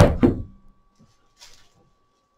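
Handling noise from a broomcorn whisk broom being wrapped with cord: a loud thump at the start, then a brief faint rustle of the straws about a second and a half in.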